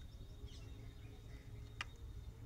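Faint steady low hum of background noise, with a single sharp plastic click near the end as the red headset's round plastic earpiece is handled in the fingers.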